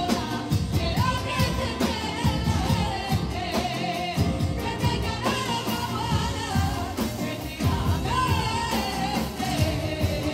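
A group of women singing a song together into microphones over acoustic guitar accompaniment, the melody held in long, wavering notes.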